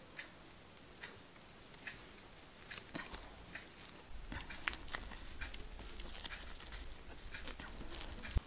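Faint crinkling and soft clicks of a bean curd sheet being rolled by hand around a meat filling on a plastic cutting board, with a low rumble from about four seconds in.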